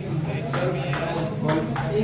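Table tennis rally: the plastic ball clicking against the paddles and the table about four times, roughly half a second apart, over murmuring voices.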